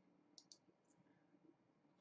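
Near silence, with two faint computer mouse clicks close together about half a second in.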